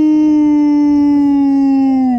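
A person howling, holding one long steady note that drops in pitch as it breaks off near the end.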